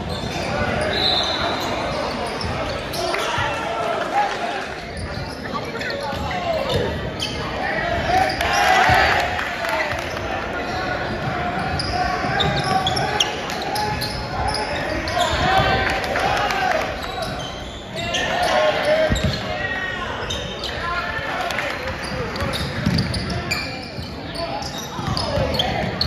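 Basketball game in a gym: a ball bouncing on the hardwood court, with short high sneaker squeaks and players' shouts echoing around the large hall.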